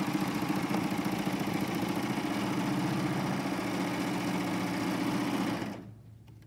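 Combination serger running at steady speed, sewing an eight-thread overlock and chain stitch along a fabric edge while its blade trims it, with a rapid even stitching rhythm. The machine stops suddenly near the end.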